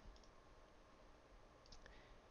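Near silence with a few faint computer mouse clicks, near the start and again near the end.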